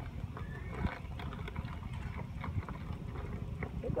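Vinegar glugging out of a plastic bottle into a funnel, a run of short irregular gurgles and clicks, over a steady low rumble of wind on the microphone. A voice says "keep going" at the very end.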